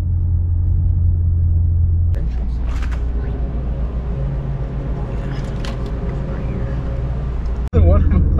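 A 2023 Mustang GT's 5.0-litre V8 idling, a steady low rumble heard inside the cabin. About two seconds in it cuts off abruptly to quieter indoor background noise, which runs until a brief dropout near the end.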